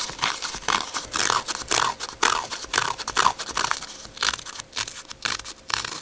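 Heidi Swapp paper distresser scraped along the edges of patterned paper, fraying them in quick, irregular rasping strokes, a few a second, that thin out near the end.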